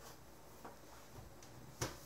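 A DVD recorder's metal case being turned around on a rubber mat by hand: faint scuffs and small clicks, then a sharp knock near the end.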